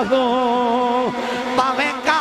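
A man singing devotional verse in a melismatic style: one long held note for about the first second, then shorter broken phrases and a rising run near the end.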